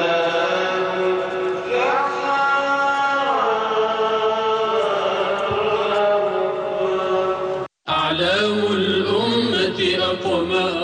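A man reciting the Quran in the melodic chanted style, holding long ornamented notes. The voice climbs about two seconds in and then steps back down. The sound cuts out suddenly for a split second near the end.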